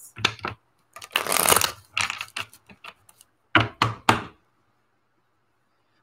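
Tarot cards being handled and shuffled over a table: a few sharp knocks, a short rustle of shuffling about a second in, then a few more knocks about three and a half seconds in.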